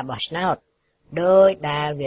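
Speech only: a radio news voice reading in Khmer, broken about half a second in by a short gap of dead silence.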